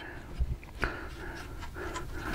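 Faint rubbing of a switch housing's wire harness being pulled out through a hollow steel handlebar, with two light clicks about half a second apart.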